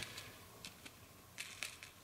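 Faint scattered light ticks and crinkles as small dry pepper seeds are shaken out of a small plastic zip bag onto potting soil.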